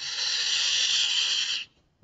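A steady hiss, about a second and a half long, that starts and cuts off suddenly.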